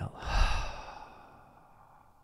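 A man's deliberate deep exhale through the mouth, a long sighing breath out that swells in the first half second and fades away over the next second.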